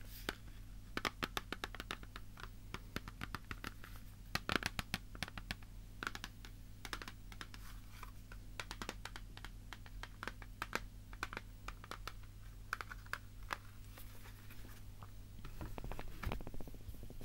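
Close-miked fingers tapping and scratching on an object, an irregular run of sharp clicks that sometimes come in quick clusters, over a steady low hum.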